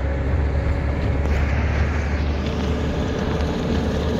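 A car driving, heard from inside the cabin: steady engine and road noise with a low rumble.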